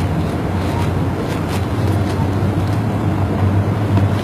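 A steady low hum under a rumbling noise.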